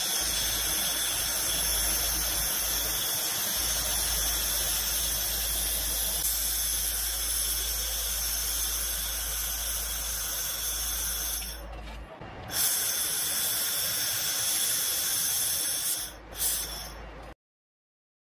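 AccTek AKH-1500W handheld fiber laser welder welding stainless steel with 1.2 mm filler wire: a steady hiss with several high whining tones over a low hum. It drops out briefly twice in the second half, each time coming back with a louder burst, and stops shortly before the end.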